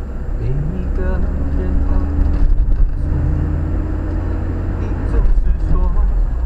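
Car driving, a steady low engine and road rumble heard inside the cabin, with a pop song playing over it and a sung note held through the middle.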